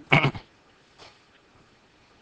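A man's brief voiced utterance, a short syllable under half a second long, just after the start, followed by quiet room tone with a faint tick about a second in.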